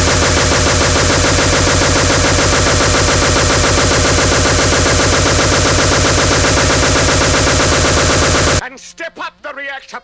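Speedcore track: a loud, dense wall of extremely fast distorted beats, machine-gun-like, that cuts off suddenly near the end. A spoken voice sample follows.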